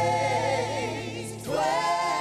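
Gospel music: a choir of backing singers holds sustained chords with vibrato over a steady low accompaniment, with a new held chord coming in about one and a half seconds in.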